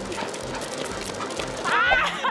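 Steady rolling noise of surfskate wheels on asphalt as dogs tow the board, then, near the end, a loud high dog yelp that rises and falls in pitch.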